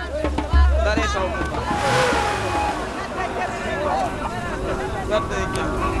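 Several voices calling out and chattering over one another, over a low rumble. A swell of noise rises and fades about two seconds in.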